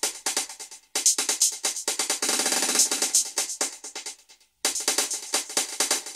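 Programmed electronic hi-hat pattern playing back through a dotted stereo delay, the echoes filling in between the hits, with little low end under it. It drops out briefly twice, about a second in and again past the middle. The delay is judged a bit too much.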